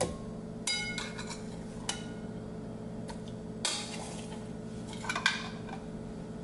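Dishes and utensils clinking and knocking against a glass blender jar a handful of times as cooked tomatoes are added to it. One clink rings briefly. A steady faint hum runs underneath.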